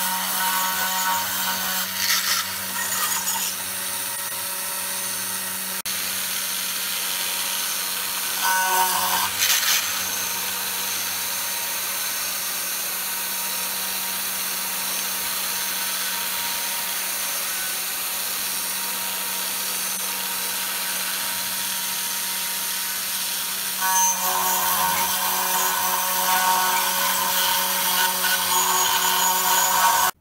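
CNC router spindle running with its cutter milling letters into a polycarbonate sheet: a steady hum with a high hiss. The cutting turns louder and harsher about two seconds in, again around nine seconds, and over the last six seconds.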